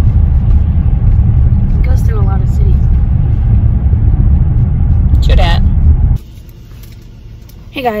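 Loud, steady low rumble of road noise inside a moving car's cabin, with two brief snatches of a voice. It cuts off abruptly about six seconds in, leaving a quiet room.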